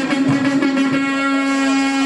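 A single voice holding one long sung note, steady in pitch, in a chanted or sung passage.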